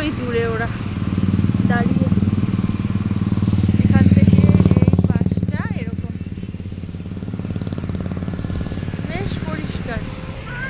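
Small motorbike engine running while under way. It pulls harder and grows louder toward the middle, then eases back to a steadier hum.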